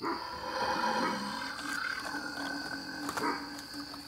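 Halloween animatronic crawling ghoul prop playing its recorded monster roar through its built-in speaker, starting suddenly and lasting about three and a half seconds, with a second swell near the end.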